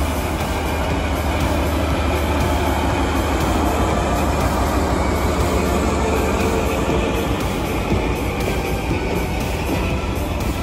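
A DE10 diesel-hydraulic locomotive pulling away slowly with a rake of unpowered Tokyu 5080-series electric cars, its engine running steadily under load while the cars' wheels roll past over the rails. Background music plays along with it.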